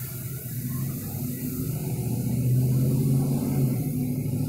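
A motor vehicle's engine running, a low steady hum that grows louder about halfway through.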